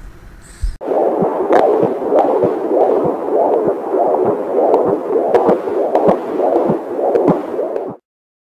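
A baby's heartbeat heard on a prenatal ultrasound, a quick rhythmic whooshing pulse a little over twice a second. It starts suddenly about a second in and cuts off abruptly at the end.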